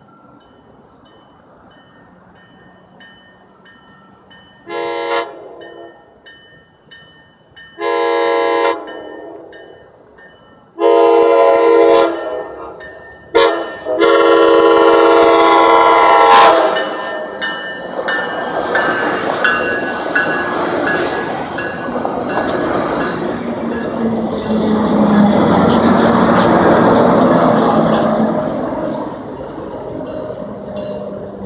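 Tri-Rail commuter train's horn blowing for the grade crossing as it approaches: five blasts, the last one long. Then the cab-car-led push-pull train passes through the crossing with a loud rush and clatter of wheels on rail, the BL36PH diesel locomotive pushing at the rear. Faint crossing-signal bells ring in the first seconds.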